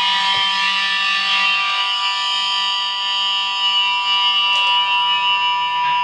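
Distorted electric guitar chord, struck once and left ringing, held steady and sustaining.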